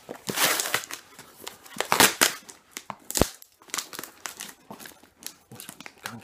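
Packaging crinkling and rustling in irregular bursts as a parcel is unpacked by hand, with one sharp knock about three seconds in.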